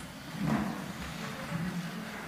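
Quiet room tone of a large hall with an open microphone: a steady low hum, and one short muffled noise about half a second in.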